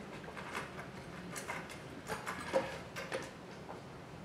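Objects being handled while rummaging through a cupboard and tool case: irregular small clicks, knocks and light clatter.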